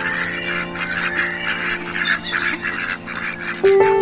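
A flock of birds calling in quick, overlapping calls over soft sustained background music, which swells louder near the end.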